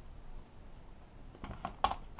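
Steel sockets and a small bolt clicking against each other and against the socket rail as they are handled, a few small metallic clicks about one and a half seconds in, the sharpest just before the end.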